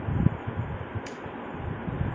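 Steady hiss of background room noise with faint low knocks, and no speech.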